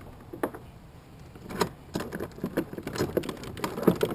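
Irregular clicks, taps and rattles of fishing gear and cord being handled aboard a kayak, sparse at first and growing busy from about a second and a half in, the loudest knock near the end.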